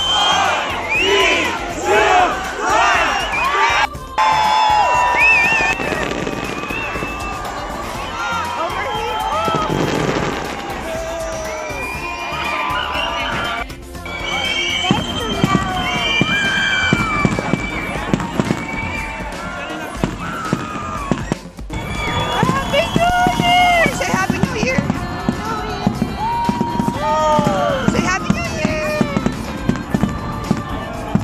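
A crowd shouting and cheering while a fireworks display goes off overhead, with dense crackling and popping in the second half. The sound breaks off abruptly a few times.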